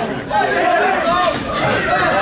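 Crowd of ringside spectators talking and shouting over one another, many voices at once with no single clear speaker.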